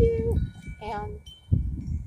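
Wind chimes ringing, several clear tones that hang and fade, over the rumble of wind buffeting the microphone.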